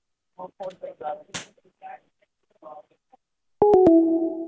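Faint, broken speech, then near the end a sharp crack and a steady two-note tone that holds on.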